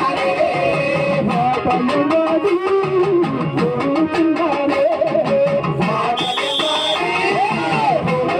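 Live Telugu chakka bhajana folk music over a sound system: an electronic keyboard melody and amplified singing over a fast, steady drum beat, with a high held keyboard note about six seconds in.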